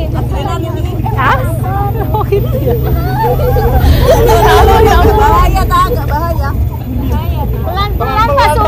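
Several women chattering over one another, with a steady low rumble underneath from the vehicle carrying them.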